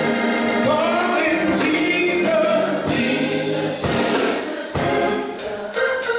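Gospel song: voices singing with a choir over accompaniment that keeps a steady beat of about one stroke a second.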